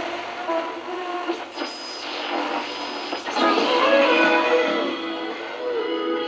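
Music received by the 1948–49 Ducati RR2050 valve radio and played through its own loudspeaker, thin with no bass, as the station is tuned in. A faint high whistle runs over it for about a second and a half, starting a second and a half in.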